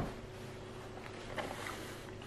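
Faint chewing of a carrot dipped in gravy: a few soft mouth clicks over a steady low hiss.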